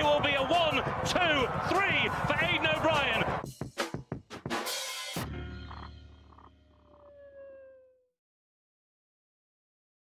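Racecourse commentary and crowd noise at a horse race finish for about three seconds, then the sound breaks up in choppy fragments. A short music sting follows and fades out, with silence from about eight seconds in.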